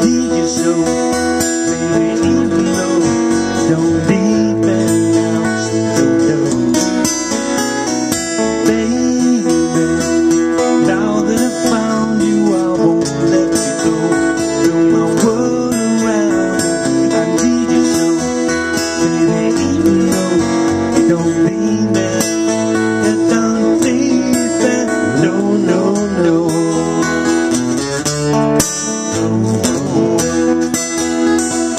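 A live band playing a pop song on strummed acoustic guitar with a second guitar, with a sung vocal over the top.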